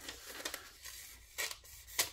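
A CPM 20CV folding-knife blade slicing through paper with a faint scratchy, rasping sound, louder for a moment near the middle. The edge is toothy, and the owner thinks a strop would quiet it.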